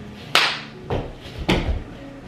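Hand slaps of high fives between two people in push-up position: two sharp slaps about a second apart, with a softer knock between them.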